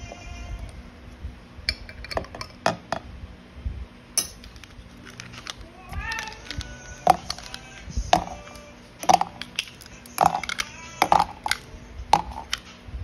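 Ice cubes and fruit pieces dropped into a clear drink bottle, clinking and knocking against it in a run of short sharp clicks.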